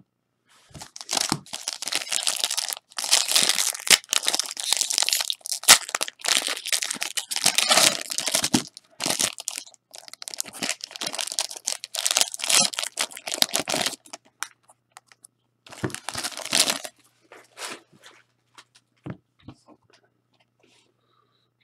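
Foil wrapper of a Panini Playbook trading-card pack being torn open and crinkled by hand, in crackling bursts over about thirteen seconds, with one more short burst near the end.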